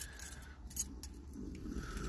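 A few light clicks and small rattles of small objects being handled, over a low steady hum.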